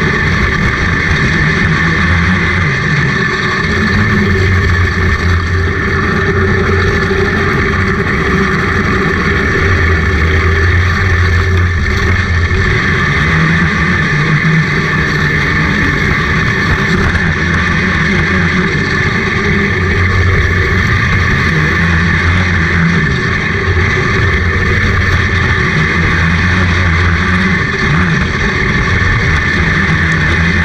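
Outlaw dirt kart engine at race pace, heard onboard: a loud, continuous run whose pitch rises and falls again and again as the throttle is worked around the oval.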